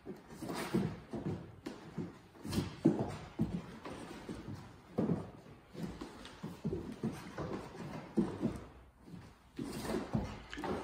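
Feet and hands thudding irregularly on a wooden floor as two people in plank step a foot forward and back between their hands.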